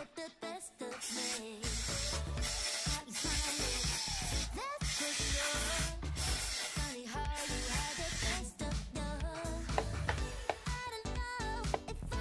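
An aerosol spray can hissing in three long bursts as cleaner is sprayed onto the disc-brake caliper, stopping a few seconds before the end. Background music plays throughout.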